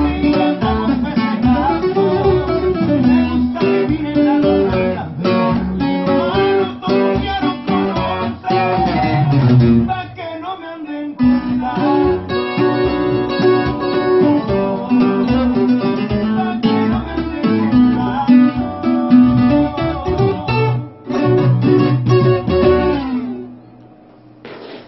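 Docerola, a Mexican twelve-string guitar with six double courses, played solo with a flowing line of plucked notes and chords. The playing lulls briefly about ten seconds in and stops about a second before the end.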